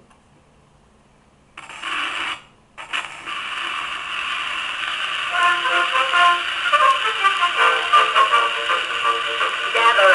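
A 1921 Victrola VV-VI acoustic phonograph starting to play a 1903 Standard 78 rpm disc: the needle meets the record with a brief burst of surface noise, a short break, then steady hiss and crackle. About halfway through, the record's instrumental introduction begins and carries on.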